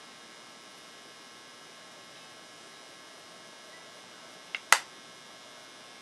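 Faint steady electrical hum over room tone, broken a little under five seconds in by a soft click and then a short, sharp click.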